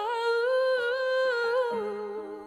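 A woman's voice holding one long wordless note with a slight vibrato, over a soft sustained chord that drops to a lower note near the end.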